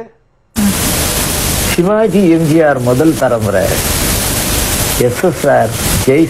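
Loud, steady hiss of a noisy old recording that cuts in about half a second in. A man's voice sounds over it from about two seconds in.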